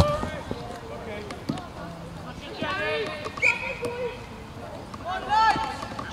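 Distant shouts from youth football players on the pitch, with a football kicked sharply at the start and again about a second and a half in.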